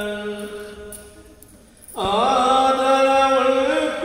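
A man chanting Hindu mantras in long, held notes. The phrase trails off, and after a pause of about a second and a half a new phrase begins, rising in pitch and then holding steady.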